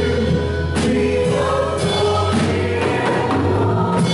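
Live worship band (drum kit, acoustic and electric guitars, keyboard) playing a gospel song while a group of singers sings along.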